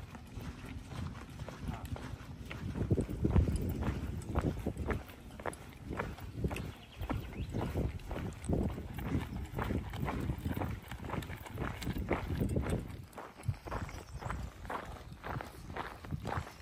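Footsteps crunching on a rocky gravel trail, with trekking-pole tips clicking on the stones in an irregular walking rhythm.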